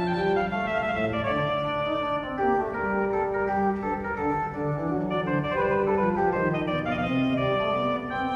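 Historic 1768 Bénigne Boillot pipe organ playing a French Baroque duo: two lines of quick-moving notes, a bass and a treble, weaving against each other in counterpoint.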